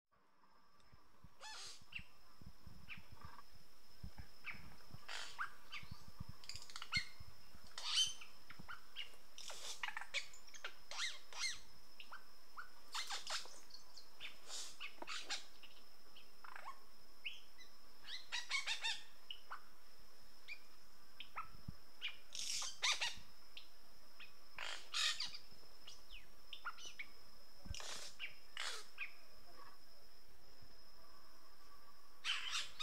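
Many birds calling: short, irregular chirps and squawks, some bunched in quick runs, over a steady high-pitched whine, fading in over the first few seconds.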